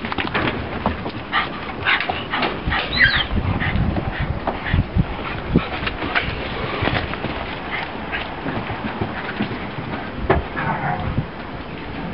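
Bull lurchers and a patterdale terrier play-fighting: irregular short bursts of growling and yelping over scuffling, with a high yelp about three seconds in.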